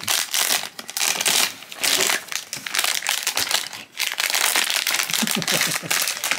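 A Pop Mart blind-box silver foil bag crinkling as hands handle it and open it to take the figure out. The crackling is irregular, with a short lull about four seconds in.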